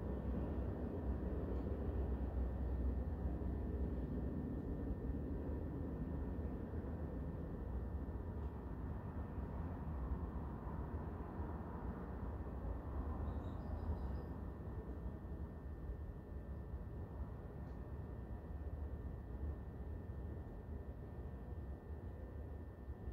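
Steady low room hum with a faint hiss, no events standing out, easing slightly toward the end.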